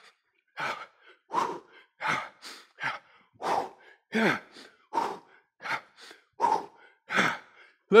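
A man breathing hard from exertion while sprinting in place: about a dozen short, forceful exhalations in a steady rhythm, roughly one to two a second, some of them voiced like brief grunts.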